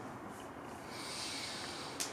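A quiet room in which a man takes a soft, audible breath, a hiss of under a second beginning about a second in.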